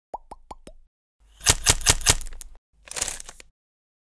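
Logo-intro sound effects: four quick bubbly plops, each gliding up in pitch, then a run of four sharp glitchy hits over a hiss, and a short bright swish.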